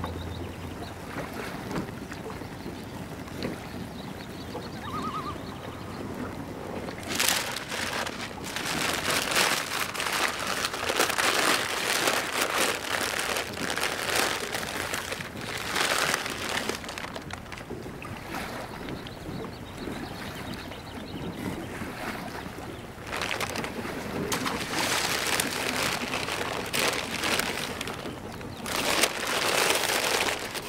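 Wind and water around an open pontoon boat on a lake, soft at first and then rising in irregular gusty surges from about seven seconds in.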